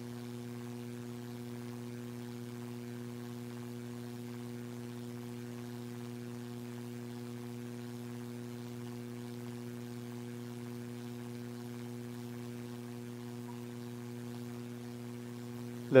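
Steady electrical hum: a low, unchanging drone with a few even overtones above it. A man's voice begins right at the end.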